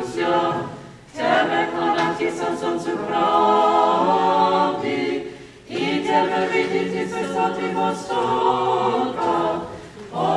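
Small Orthodox church choir singing a Christmas carol a cappella. Its sustained phrases are broken by short pauses about a second in, again around five and a half seconds, and near the end.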